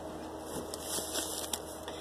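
Faint rustling and crinkling of plastic snack wrappers being handled, with a few soft ticks.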